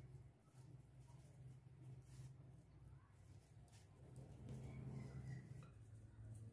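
Near silence: a faint steady low hum with faint scraping strokes of a silicone spatula mixing flour into a soft dough in a glass bowl, a little louder after about four seconds.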